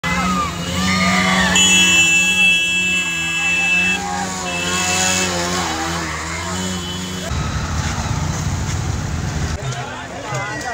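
Motorcycle engines running as a group of bikes rides past, with voices shouting over them. Steady high-pitched tones sound from about one and a half seconds in, and a deeper engine rumble takes over near the end.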